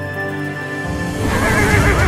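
A horse whinnies with a wavering call over music in the second half. A deep low rumble comes in just under a second in, beneath it.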